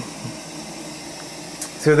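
Whirlpool water softener running at the start of a manual recharge: a steady rushing hiss.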